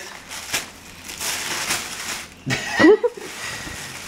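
Paper gift bag and tissue paper rustling and crinkling as a present is pulled out of the bag, with a short rising vocal exclamation about two and a half seconds in.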